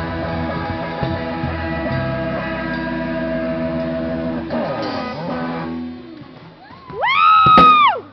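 Rock band playing live: electric guitar chords ringing over drums, ending in a downward slide about five seconds in. Near the end, a loud high-pitched squeal about a second long rises, holds and falls away.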